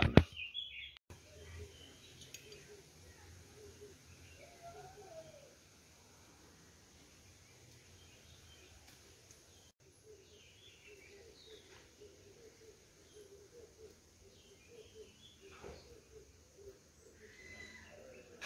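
Faint outdoor ambience with birds chirping now and then.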